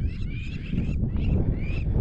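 A flock of birds calling, many short rising and falling calls following one another, over a low rumble of wind on the microphone.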